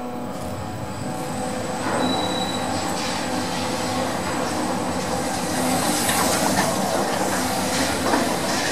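Lift car travelling in its shaft: a steady mechanical rumble with a low hum, a brief high squeal about two seconds in, and a rise in loudness from about five seconds in.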